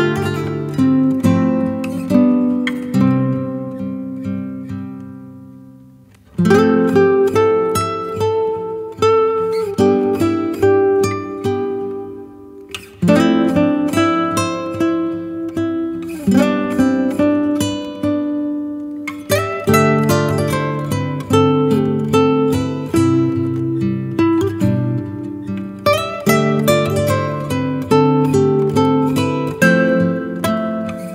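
Background music on acoustic guitar: plucked and strummed notes that ring and fade, with the playing dying away twice into short pauses before new phrases begin.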